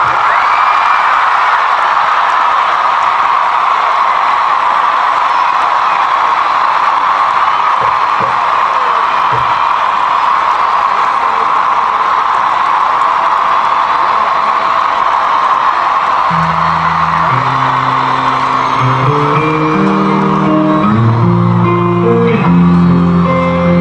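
A large concert crowd cheering and screaming steadily between songs. About sixteen seconds in, bass guitar and guitar start playing low stepped notes as the next song begins.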